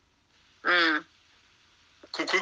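A man's voice making one short sound, a single syllable with a steady pitch about two-thirds of a second in, set between pauses in his speech.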